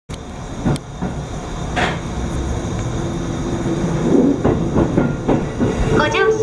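Limited express electric train (373 series) pulling away from a station, heard from inside the train: a steady running rumble with sharp wheel clacks, once or twice early and in a quick cluster about four and a half seconds in, as it crosses the points.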